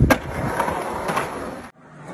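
Skateboard on concrete: a heavy landing thud at the start and a sharp board clack just after, then wheels rolling. The sound cuts off abruptly near the end and fainter rolling follows.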